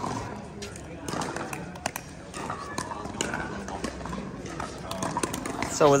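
Pickleball court ambience: indistinct voices of players talking and a few scattered sharp knocks.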